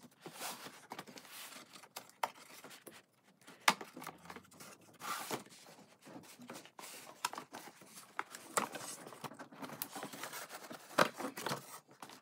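Cardboard packaging rustling and scraping as a plush toy pony is pulled out of its box, with scattered small clicks and knocks, one sharper click a little under four seconds in.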